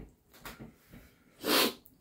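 A man's short, sharp burst of breath about a second and a half in, after a few faint mouth sounds: a reaction to the burn of hot pepper tincture held in his mouth.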